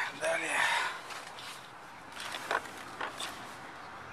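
A short wordless voice sound, then several light clicks and knocks from handling in a car's interior.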